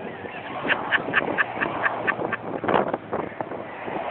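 Car jack being worked by hand, squeaking in a steady rhythm of about four squeaks a second, which stops about two and a half seconds in.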